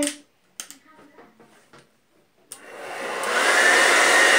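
Handheld hair dryer switched on about two and a half seconds in, after a few faint handling knocks. It runs with a steady blowing noise and a whine that rises in pitch as the motor spins up, then holds level.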